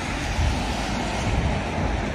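Road traffic going past, a steady rush of tyres and engines with a heavy low rumble that swells a little in the middle.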